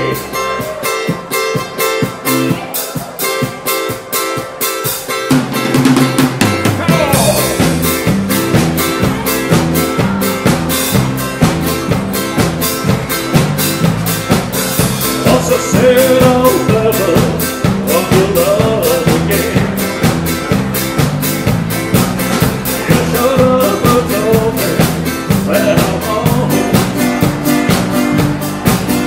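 A country band playing live. For the first five seconds or so there is no bass or drums, then the bass and drum kit come in with a steady beat under the guitars and fiddle.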